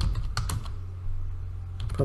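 Computer keyboard typing: a few keystrokes in two short runs, about half a second in and again near the end, over a steady low hum.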